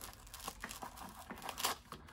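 Fabric magazine pouch and its webbing strap rustling as hands work them, with short scratchy rips of hook-and-loop (Velcro) being pulled apart, the loudest after about a second and a half.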